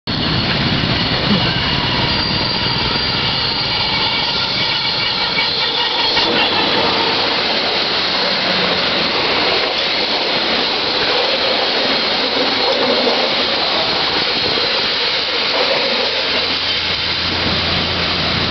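Indonesian CC 204 diesel-electric locomotive passing close with a steady pitched sound over the noise, which cuts off about six seconds in; then its passenger coaches rolling past on the rails, a loud steady noise.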